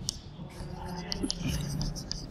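Chalk scratching and tapping on a chalkboard as a line of words is written, in several short strokes, under low murmured speech.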